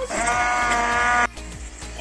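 Electric immersion (stick) blender running at a steady, high motor whine while it purées tomato and soaked ñora peppers in a plastic jug, then cutting off about a second and a quarter in.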